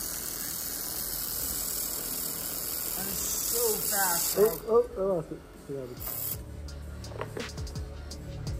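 Handheld fiber laser welder running a bead on sheet steel: a steady high hiss with spatter that cuts off about four and a half seconds in, followed by one short burst about six seconds in.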